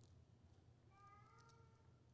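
Near silence: room tone with a low hum, and a faint, brief high-pitched wavering sound about a second in.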